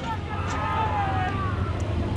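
Faint voices calling from a little way off, over a steady low rumble.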